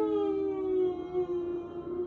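A woman crying with emotion: a long, drawn-out, high wailing sob that slowly falls in pitch.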